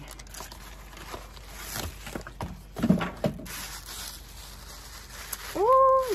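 Rustling and scraping of a synthetic wig's fibres being handled close to the microphone as it is lifted up, with a sharp knock about halfway through.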